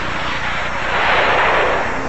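A rushing, engine-like noise, like a vehicle or jet going by, that swells about a second in and fades near the end.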